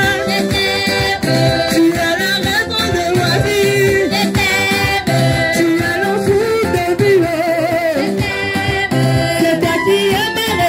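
Church congregation singing a lively worship song together, loudly.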